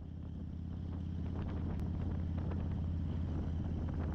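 Harley-Davidson V-twin motorcycle engine running steadily while riding, a low even drone with wind on the microphone, fading in over the first couple of seconds.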